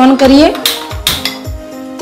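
Sharp metallic clicks, two or three in about half a second near the middle, from a hand-held spark gas lighter being struck to light a gas stove burner, over background music.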